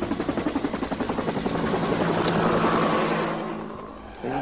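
Helicopter rotor beating in rapid, even pulses, swelling and then fading away near the end.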